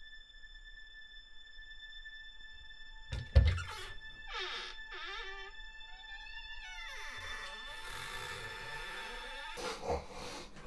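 Eerie film sound design: a steady high drone of held tones, broken by a heavy thud about three seconds in, then gliding, bending tones and a swelling noisy wash that ends in another hit near the end.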